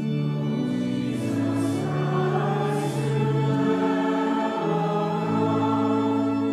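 A group of voices singing a slow hymn in church, each note held about a half second to a second, with the sung words' consonants faintly audible.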